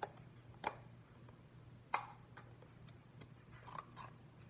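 A few sharp clicks and taps, about four spread unevenly and loudest just before the middle, from a table knife knocking against food packaging while a bagel is spread with cream cheese. A low steady hum runs underneath.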